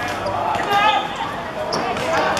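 Voices shouting on a football pitch, one shout loudest just under a second in, with a few sharp knocks of the football being struck.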